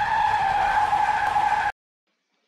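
Sound effect with the airbag-inflation animation: a steady, high squeal over a rushing noise that swells and then cuts off suddenly near the end.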